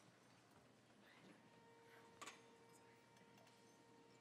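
Near silence: room tone, with a faint steady tone starting about one and a half seconds in and a single faint click a little past two seconds.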